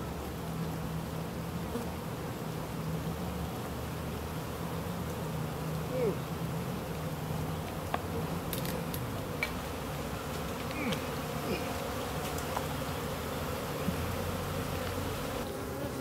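Honeybees of a queenless colony buzzing steadily around the open hive. It is a constant low hum of many wingbeats, with no let-up.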